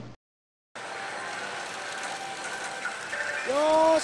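Music cuts off, and after a brief silent gap the steady background din of a pachislot parlor comes in. Near the end a man calls out in a drawn-out voice.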